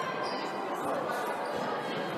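Gym crowd noise during play: an even murmur of voices in a large hall, with a basketball being dribbled on the court.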